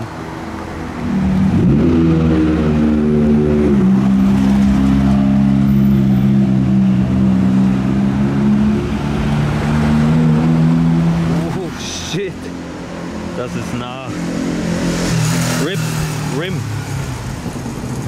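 A car engine accelerating loudly, dropping in pitch at a gear change about four seconds in, then holding a steady drone until it fades about eleven seconds in. Quieter street noise with voices follows.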